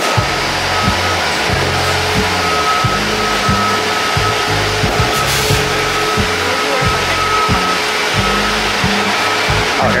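A steady, loud rush of idling and moving buses at a terminal, with a high electronic beep repeating throughout. Bass-heavy music with a steady beat starts right at the beginning and plays over it.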